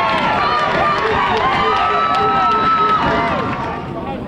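Several voices of players and spectators shouting and cheering over one another at a football match, with one long held shout in the middle; it eases off near the end.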